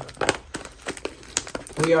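Plastic shrink-wrap crinkling in irregular crackles as it is peeled off a trading card hobby box. A voice starts near the end.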